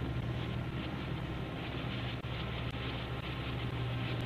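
A steady low hum with a faint hiss behind it, with no distinct events.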